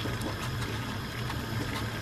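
Water boiling steadily in a stainless steel saucepan with two eggs in it, on a gas hob.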